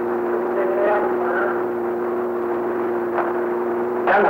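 A steady low hum of two held tones over a background hiss, with a faint voice about a second in and a brief click near the end.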